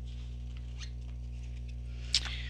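Tarot cards being handled and picked up from the deck: a few faint scratchy rustles and light taps over a steady low electrical hum.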